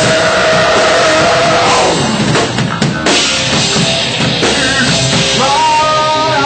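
A rock band playing loud and live, with the drum kit most prominent.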